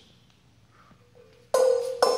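Kettlebells clang loudly about one and a half seconds in, a metal strike that leaves a steady ringing tone, as they are lowered out of a deep squat.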